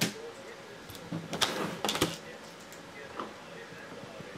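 A few sharp clicks and taps, the clearest about a second and a half and two seconds in, over a quiet background.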